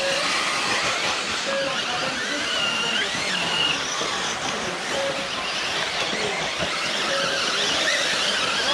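Electric 1/8-scale RC buggies running on a dirt track. Motor whines rise and fall over a steady noise.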